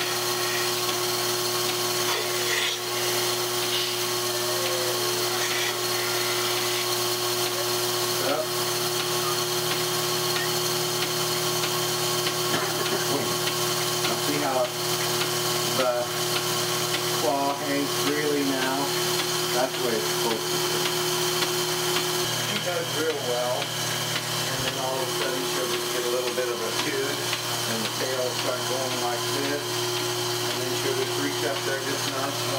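Bucket milking machine running on a cow: the vacuum pump gives a steady motor hum with a few held tones while the teat cups are fitted and draw milk. The hum's pitch shifts slightly about two-thirds of the way through.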